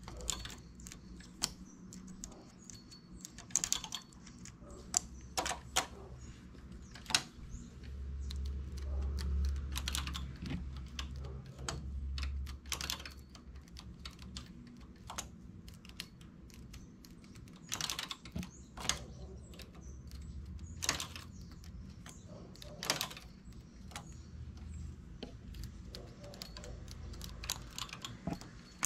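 Irregular small clicks and taps of a hand transfer tool and metal latch needles on a knitting machine's needle bed as stitches are lifted and moved from needle to needle for lace eyelets. A low rumble swells for a few seconds near the middle.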